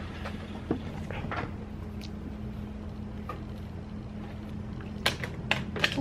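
Steady low electrical hum, with a few sharp clicks and knocks near the end as the solar panel and its cord are handled.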